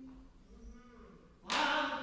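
A held sung note fades out, followed by about a second of low, quiet sound. Then choir singing starts abruptly and loudly about a second and a half in.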